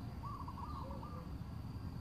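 A bird calling in the background: a quick run of short, arched notes, then two lower notes, over a steady low rumble.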